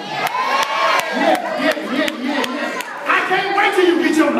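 Church congregation shouting and cheering in response to the preacher, many voices overlapping, with a few sharp hand claps.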